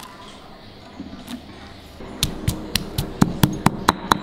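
Stone pestle pounding garlic cloves and Thai chilies in a stone mortar, crushing them coarsely to bring out their oils. It is quiet at first; about halfway in a run of sharp knocks starts, about four a second and speeding up slightly.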